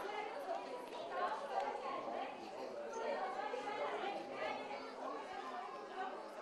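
Overlapping chatter of several people talking at once, no single voice clear.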